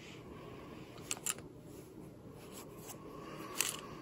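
Handling noise from binoculars with a rubber-strap bino clamp being turned in the hand: soft rubbing, with two quick clicks about a second in and a sharper click near the end.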